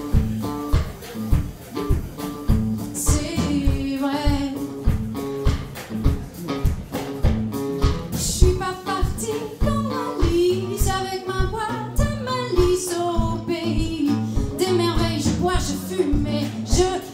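A live soul song: a woman singing over a backing band, with drums keeping a steady beat.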